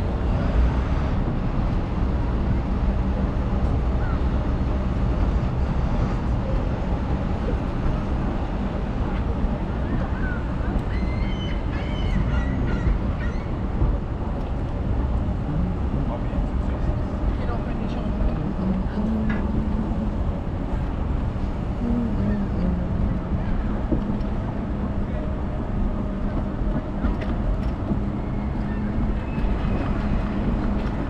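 Steady outdoor city ambience: a constant low rumble of traffic and moving air on the microphone, with faint voices of passers-by now and then.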